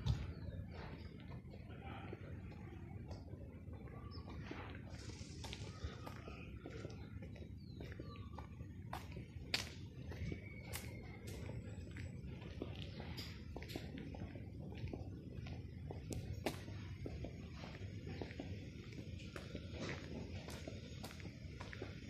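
Faint outdoor ambience of a quiet residential street: a steady low rumble with scattered light clicks and a few brief high chirps.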